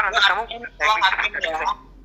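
Only speech: a voice talking over a Zoom call recording.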